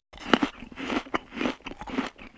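Cartoon munching sound effect: a quick, irregular run of small crunchy bites and chewing.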